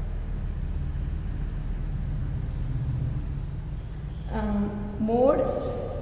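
Steady high-pitched insect chirring in the background over a low hum. A short voiced sound comes twice, about four and five seconds in.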